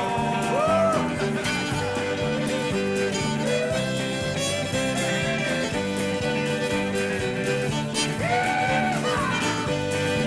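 Fiddle playing an instrumental break in an upbeat country tune, over guitar backing. The fiddle holds long notes and slides up into them about a second in and again near eight seconds.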